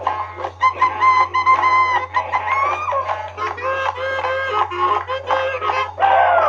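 Early-1950s honking R&B saxophone record playing, with squealing, bending sax notes over the band. A steady low hum runs under it.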